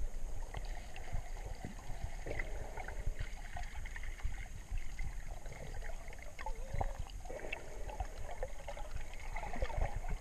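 Underwater ambience picked up by a submerged camera: a low water rumble with scattered small clicks and crackles.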